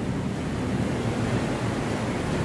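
Steady background noise: an even hiss with a low rumble and no distinct events, the recording's room noise.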